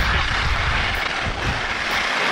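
Wind buffeting a skier's action-camera microphone, with the hiss of skis running over snow during a fast downhill run: a steady rushing noise over a heavy low rumble.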